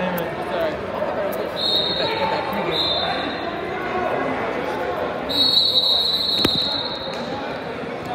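Referee's whistle blown three times over gym chatter: two short blasts, then a longer blast about five seconds in, with a sharp knock during it.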